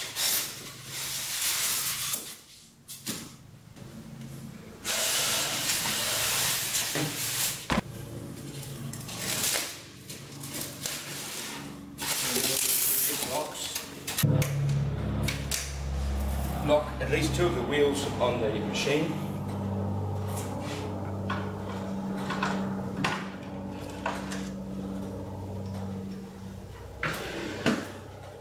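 Expanded-polystyrene foam packing being pulled out of a cardboard carton, in several bursts of rubbing and scraping. Over the second half come handling knocks and a low steady rumble as the unpacked unit is moved.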